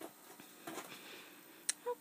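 Quiet small-room tone with faint rustling and soft ticks, and one sharp click near the end.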